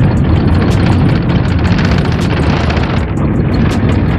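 Loud, steady in-cab road noise of a manual-transmission vehicle driving on a dirt road: a deep rumble of engine and tyres, with frequent light ticks and rattles over it.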